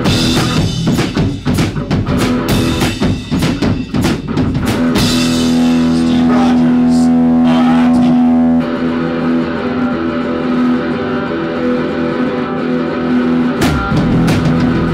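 Live rock band on electric guitar, bass guitar and drum kit playing an instrumental passage. About five seconds in, the drums drop away under a long sustained chord, and they come back in just before the end.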